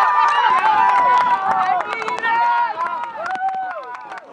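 Players and spectators cheering and shouting after a goal, several high voices overlapping, with the noise dying down near the end.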